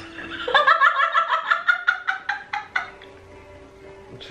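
A woman laughing hard: a quick run of about ten 'ha's over a little more than two seconds, starting about half a second in.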